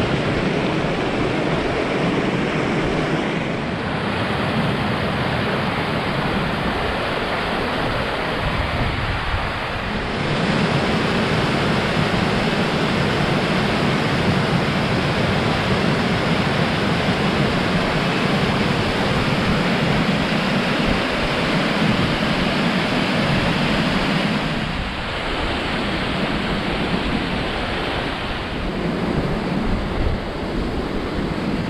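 A small moorland stream, the headwaters of the River Barle, rushing and tumbling down a stony channel and over a cascade. It makes a steady noise of flowing water that changes in tone a few times.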